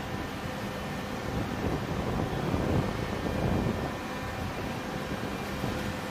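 Steady machinery hum: a low rumble with a few faint constant tones, swelling slightly about halfway through.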